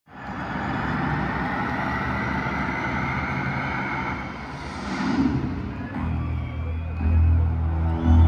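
Stadium crowd noise, then about six seconds in a loud, deep bass drone from the concert PA sets in and swells, the dark opening of a live rock song.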